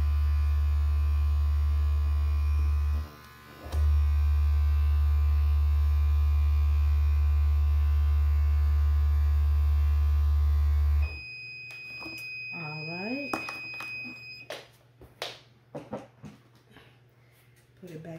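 Generic handheld heat press running with a loud, steady electrical hum while it presses, which drops out briefly about three seconds in. About eleven seconds in the hum stops and the press's timer sounds one steady high-pitched beep for about three and a half seconds as its countdown runs out, followed by light rustles and taps of paper being handled.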